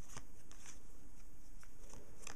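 Amada Dragon Ball PP trading cards handled by hand: cards slid out of a fanned stack and moved to the back, with several light clicks and rustles as card edges snap against each other.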